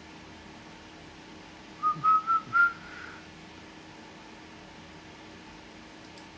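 A person whistling four short notes in quick succession, each a little higher than the last, about two seconds in.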